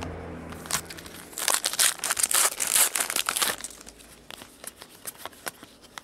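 Trading cards and their foil pack wrapper handled by hand: a dense crinkling with many small clicks about a second and a half in, lasting about two seconds, then scattered light clicks as the cards are flipped.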